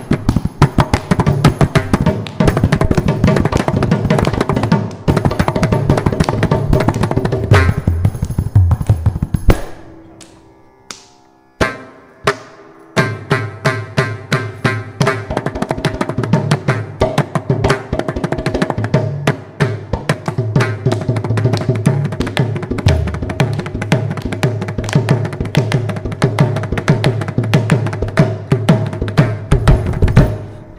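Mridangam playing a fast stroke solo in a Carnatic tani avartanam, with dense rapid strokes over its deep ringing bass head. About ten seconds in the playing breaks off and dies away, with one lone stroke, then resumes about three seconds later.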